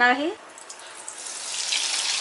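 Hot oil sizzling as breadcrumb-coated paneer cubes go in to deep-fry. The sizzle starts about half a second in and builds steadily louder.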